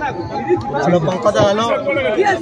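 Speech: a man talking close into a handheld microphone, with other men chattering around him.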